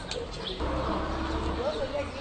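Outdoor ambience: indistinct voices and cooing bird calls, with a low steady rumble starting about half a second in.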